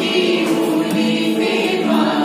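A small mixed group of men and women singing a song together, accompanied by acoustic guitars.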